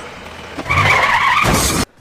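Car tyres screeching in a skid: a loud squeal on two steady pitches that starts about half a second in and cuts off suddenly just before the end.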